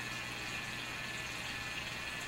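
Steady faint hiss with a low hum underneath: room tone and recording noise from the narration microphone, with no distinct event.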